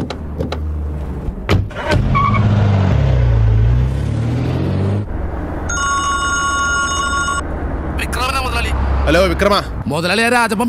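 A car door thumps shut, then the car's engine runs and revs, its pitch rising and falling as the car pulls away. About six seconds in, a phone rings steadily for about a second and a half, and a man starts speaking near the end.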